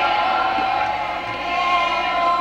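Concert audience cheering and shouting, many voices overlapping in a loud sustained roar.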